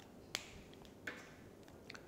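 A quiet pause broken by one sharp click about a third of a second in, followed by a fainter, softer sound about a second in.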